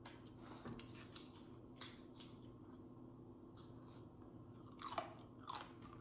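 Faint chewing of a tortilla chip, with a few scattered soft crunches, the loudest coming near the end.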